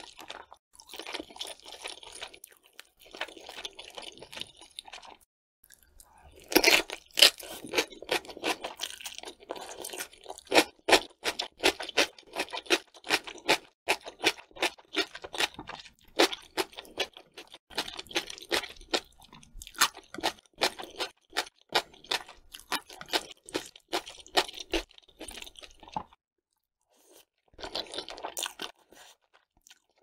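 Close-miked chewing of crisp food: a few seconds of wet chewing in bursts, a short pause, then a long run of rapid, crisp crunches, several a second. It stops a few seconds before the end, and one more short burst of chewing follows.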